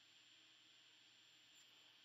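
Near silence: faint room tone with a thin steady high hiss.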